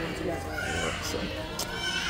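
Mostly quiet conversational speech, a voice talking softly, over a steady low background hum.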